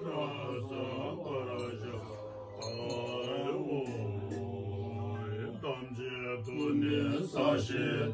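Tibetan Buddhist monks chanting prayers together, a low steady drone with the melody rising and falling over it.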